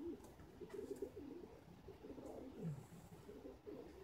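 Domestic racing pigeons cooing in their loft. Several soft coos overlap, low and wavering, with no break between them.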